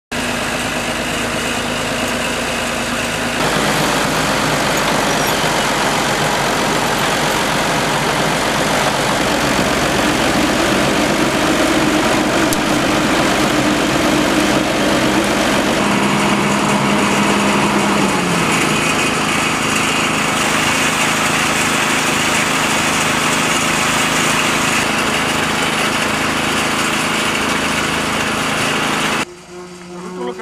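Heavy construction machinery running: the diesel engine of a hydraulic excavator at work. The sound changes abruptly about three seconds in, again around sixteen and twenty seconds, and drops away just before the end.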